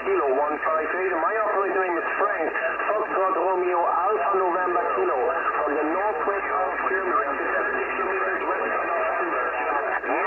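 A pileup of many CB stations talking over one another on single sideband (27.385 MHz, lower sideband), received by long-distance skip and heard through the radio's speaker. The voices overlap without a break and sound narrow and thin, with nothing above about 3 kHz.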